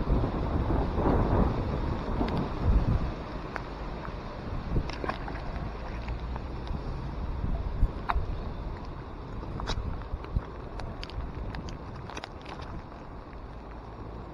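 Wind buffeting the microphone in heavy rain, with scattered small sharp taps, while a wet magnet-fishing rope is hauled in by hand. The rumble is strongest in the first few seconds and then eases.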